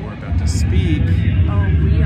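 People's short vocal exclamations over a steady low rumble that comes in about a third of a second in.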